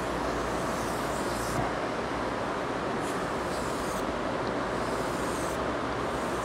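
Chalk scraping on a blackboard in short strokes while a diagram is drawn, over a steady rushing background noise.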